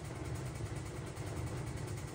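Steady low machine hum, unchanging, with no other events.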